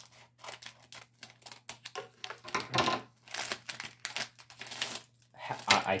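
Small scissors snipping open a foil minifigure blind bag, with irregular crinkling and tearing of the foil packet and its plastic inner bag as it is opened.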